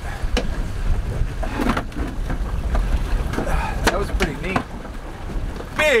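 Wind buffeting the microphone aboard a small boat at sea, a steady low rumble, with a couple of sharp knocks from gear handled on deck and faint voices.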